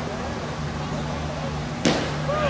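Ballpark crowd murmuring steadily, then near the end a single sharp pop of a pitched baseball into the catcher's mitt.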